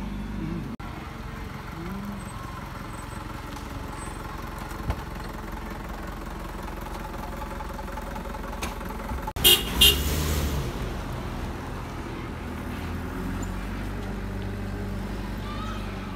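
Two short vehicle-horn toots in quick succession about nine and a half seconds in, over a steady low background of road traffic.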